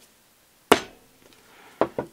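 Small hammer striking a roll pin to start it into a steel AR-15 gas block and gas tube: one sharp strike about a third of the way in, then two lighter taps near the end.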